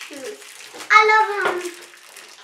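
A girl's short wordless vocal sound about a second in, over light rustling and clicking of small plastic toy pieces and wrappers being handled.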